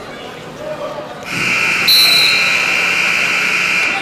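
An electric scoreboard buzzer sounds one long steady blast of about two and a half seconds, starting about a second in. A brief higher tone overlaps it near the middle.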